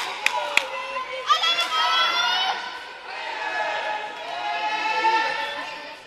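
Voices shouting and cheering in a sports hall: a long high-pitched call about a second in, then more shouting through the middle. Two sharp knocks sound in the first second.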